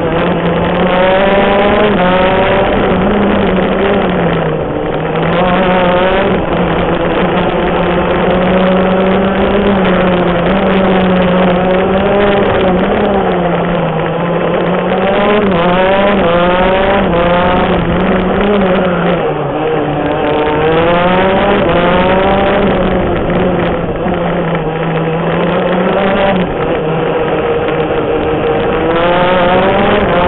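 A 125cc two-stroke shifter kart engine at racing speed, heard onboard. Its pitch climbs in repeated sweeps through the gears and drops back between them as it shifts and slows for corners.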